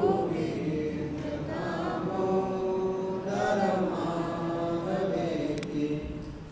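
Devotional chanting by a group of voices singing together in long held notes.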